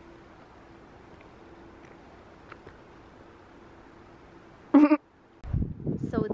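Faint outdoor background hiss for most of the stretch. Near the end comes one short, high-pitched vocal yelp, over in a fraction of a second. A low rumble of wind or handling on the microphone follows it.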